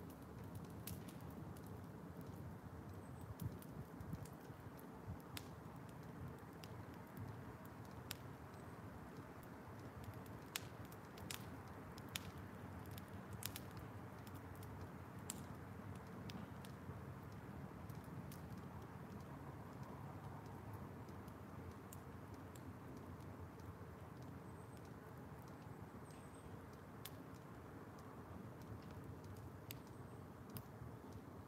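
Wood fire burning damp firewood in a steel burn barrel, giving off scattered, irregular sharp pops and crackles over a faint steady rush.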